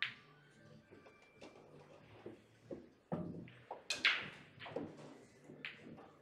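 A series of sharp clacks and knocks at a pool table, the loudest about four seconds in, over faint background music.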